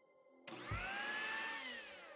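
An electric mixer grinder starts suddenly and grinds green herbs into a masala paste. Its motor whine climbs in pitch, holds for about a second, then drops as it winds down near the end.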